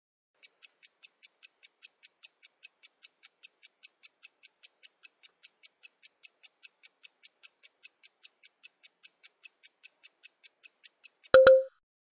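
Countdown-timer ticking sound effect, quick even ticks at about five a second, marking the time allowed to write an answer. It ends near the close with a brief low tone.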